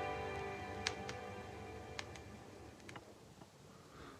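The end of a song played from a vinyl-record transfer: the last held chord dies away, with several sharp clicks and pops of record surface noise, leaving faint hiss.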